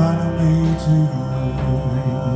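Live band playing an instrumental passage: electric guitar and bowed violin holding sustained notes over drums, with no singing.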